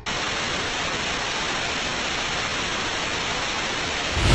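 Television static: a steady hiss of white noise with a faint, thin high whine running through it.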